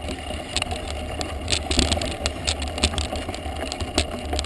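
Mountain bike climbing a loose gravel dirt track: knobby tyres crunching over stones with irregular clicks and rattles from the bike, over a steady low rumble.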